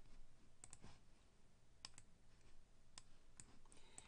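Faint computer mouse clicks over near silence: a handful of short clicks, some in quick pairs.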